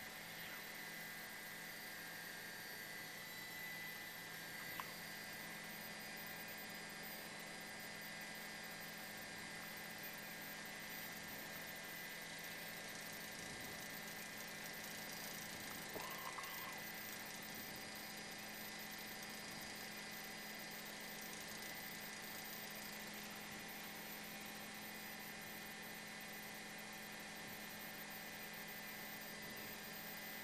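Faint, steady electrical hum and hiss with no other clear sound, apart from a couple of tiny clicks about five and sixteen seconds in.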